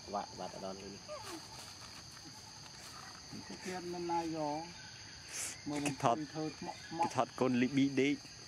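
Insects drone steadily and high-pitched in the background, while a voice comes in short pieces, briefly early on and around the middle, then more often and louder near the end.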